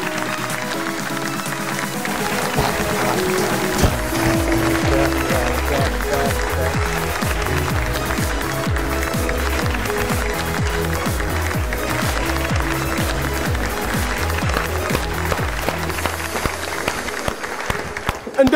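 Upbeat game-show theme music, with a strong bass beat coming in about four seconds in, and clapping along with it.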